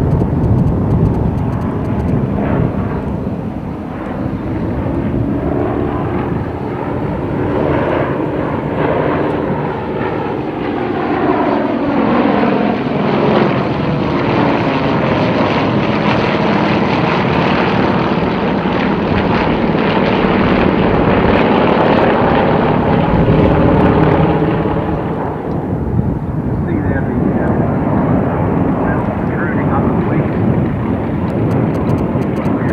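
Several Yakovlev Yak-52s flying past in formation, their M-14P nine-cylinder radial engines and propellers droning, with the pitch sweeping up and down as the aircraft pass. The sound drops off somewhat about 25 seconds in.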